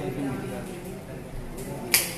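A man's voice briefly in a room, then a single sharp, loud snap or click just before the end.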